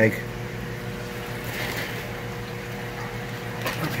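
A steady low electrical hum with one held tone, with a soft swish of water in a tub near the middle.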